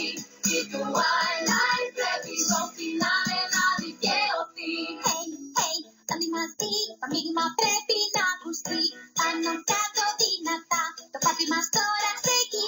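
Upbeat pop song sung in Greek by young female voices over a rhythmic backing track with a steady beat.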